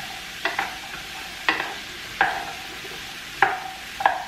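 Diced sweet potatoes sizzling in oil in a skillet while a wooden spoon stirs them, knocking and scraping against the pan about five times, each knock with a brief ring.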